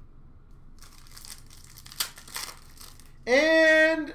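A foil trading-card pack wrapper crinkling and tearing open, with a sharp snap about two seconds in. Near the end a man's voice lets out a loud, drawn-out exclamation.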